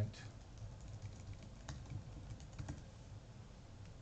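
Typing on a computer keyboard: an irregular run of light key clicks as a short line of text is typed.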